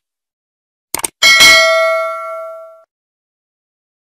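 Subscribe-button animation sound effect: two quick clicks about a second in, then a notification-bell ding that rings out and fades over about a second and a half.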